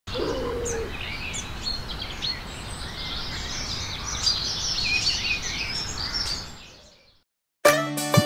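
Birds chirping and calling over a steady outdoor background hiss, fading out about seven seconds in. After a brief silence, music starts just before the end.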